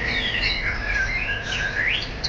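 Several caged songbirds singing at once: overlapping whistled phrases that glide up and down, with one held whistle and a rising sweep near the end.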